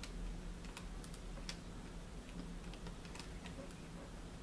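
Faint, irregular clicks of a laptop keyboard being typed on, over a steady low hum.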